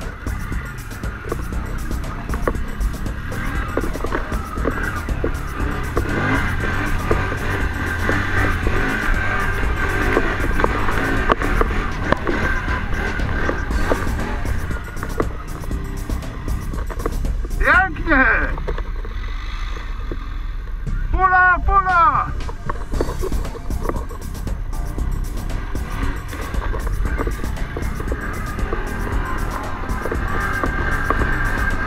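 Can-Am ATV engine running steadily under way, a continuous engine drone, with two quick sweeps of pitch down and back up about eighteen and twenty-one seconds in.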